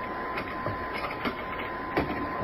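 Spaceship-cabin background sound effect of a radio drama: a steady machine hum with an even high whine, broken by a few faint clicks.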